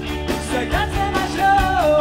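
Live rock band: electric guitar and drum kit playing, with a lead vocal coming in about a second in and holding a note that drops in pitch near the end.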